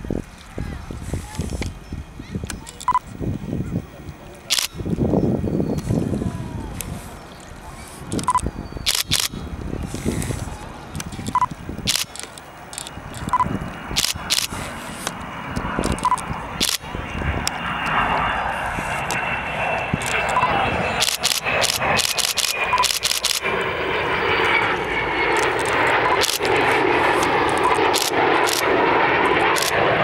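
Avro Vulcan XH558's four Rolls-Royce Olympus turbojets, a jet roar with a faint high whine that comes in about halfway through and grows steadily louder as the bomber approaches low. Sharp clicks and voices sound over it.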